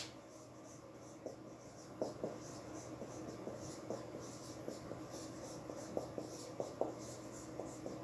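Marker pen writing on a whiteboard: a run of faint, irregular strokes and small taps as characters are drawn, starting about a second in.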